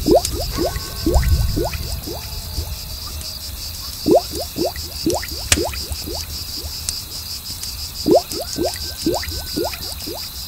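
Bubbles popping in quick runs of plops, each gliding up in pitch, over a steady high insect chorus. A low rumble swells about a second in.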